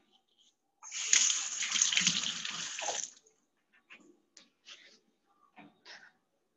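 A steady hiss lasting about two seconds, then a few faint light taps.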